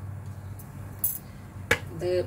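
A single sharp click near the end, with a short high hiss about a second in, over a steady low hum.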